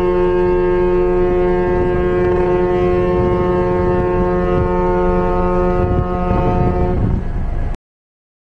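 Ship's horn on the Kho Shipping Lines passenger ferry M/V Masabate City sounding one long, steady, deep blast of about seven seconds, which then stops.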